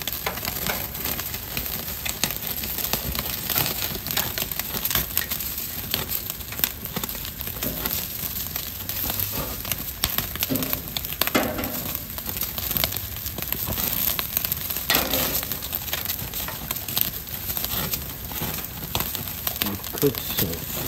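Heart, liver and kidney kebabs on metal skewers sizzling over glowing charcoal, a steady hiss dotted with many small sharp crackles as juices and fat drip onto the coals. Now and then a light metallic clink of the skewers being handled.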